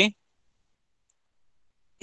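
The end of a spoken "okay", then silence with no sound at all.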